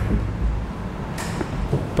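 Meeting-room background: a steady low rumble, with a brief hiss-like rustle about a second in.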